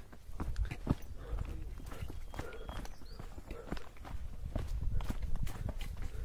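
Footsteps of people walking down a dry dirt trail: a run of irregular crunching steps, with a low rumble underneath.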